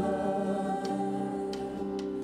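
Live gospel worship song: a woman singing long held notes over sustained musical backing.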